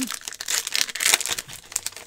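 The metallic foil wrapper of a 2020-21 Panini Prizm basketball card pack being torn open and crinkled by hand: a dense crackling rip, loudest in the first second and thinning out near the end.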